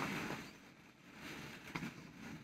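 Faint rustling and a few soft knocks of plastic ball-pit balls shifting as a child climbs onto a large inflatable ball.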